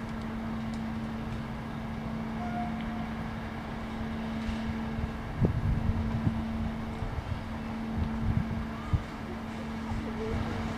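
A steady low hum over a background rumble. Wind buffets the microphone in gusts about halfway through and again near the end.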